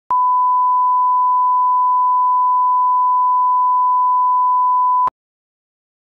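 Broadcast colour-bar line-up reference tone: one steady, single-pitched beep lasting about five seconds that starts and cuts off abruptly.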